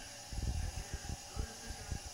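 A quick, irregular run of soft, low taps and knocks, about a dozen, starting about a third of a second in, over a faint steady hiss.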